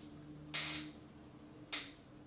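A stack of empty, depotted cardboard eyeshadow palettes handled in the hand: a brief scrape about half a second in and a short light click near the end.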